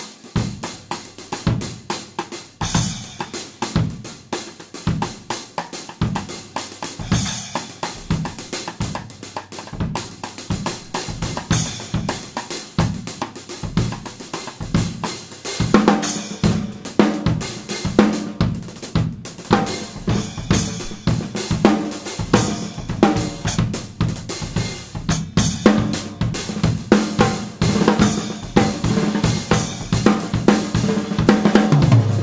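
Drum kit played in a groove with accents on a Meinl 10-inch Byzance Traditional splash cymbal, a short bright splash that cuts through the kit. About halfway through the playing gets busier and louder.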